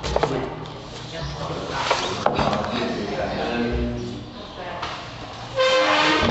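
Indistinct voices of people talking in a room, with a few sharp clicks and paper noise as the booklet's pages are handled; near the end a loud, steady-pitched voice or tone comes in.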